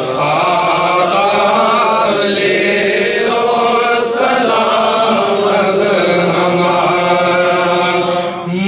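Men's voices chanting a devotional chant together in long, drawn-out notes, with a short sibilant hiss about halfway through.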